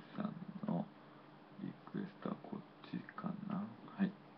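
Low, broken murmuring of a voice into a microphone in short fragments with pauses between them, quieter than ordinary talk.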